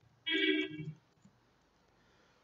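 A short steady beep, lasting under half a second, about a quarter of a second in. A few faint clicks follow, like keys being typed on a computer keyboard.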